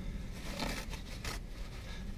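Soft rustling with a few light knocks and scrapes as things are handled inside a car cabin.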